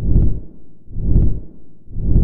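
Deep booming sound-effect hits, one about every second, each swelling and fading quickly: a produced outro sting set to animated title cards.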